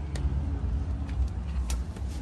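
Low steady rumble of a car engine idling, with a few light clicks and knocks as someone climbs into the driver's seat.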